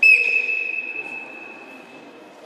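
A coach's whistle blown in one long blast. It starts sharply and loud, then fades while holding a steady high pitch for nearly two seconds.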